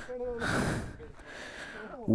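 Faint men's voices talking, with a heavy breath on the microphone about half a second in.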